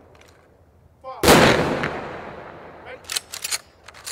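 Gunfire: one heavy boom about a second in that rolls away slowly, then a quick run of sharp cracks near the end.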